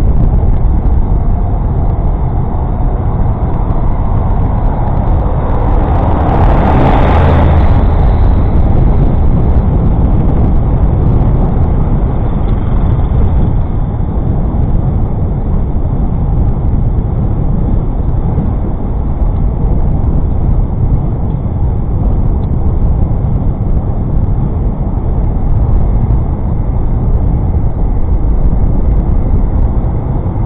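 Steady rushing of wind and rolling noise on a bike-mounted camera's microphone while a Brompton folding bicycle is ridden along a paved path, with a louder, brighter swell of noise about seven seconds in.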